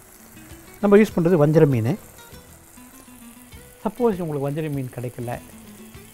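A man's voice speaking in two short phrases, over a faint steady background hiss.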